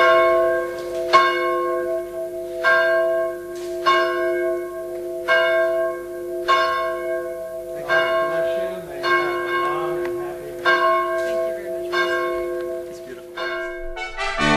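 A church bell rung over and over, about one strike every second and a quarter, each strike ringing on into the next.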